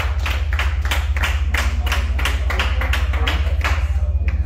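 Drum kit played alone in a live rock band's break: an even run of sharp stick strokes, about four to five a second, over a steady low amplifier hum.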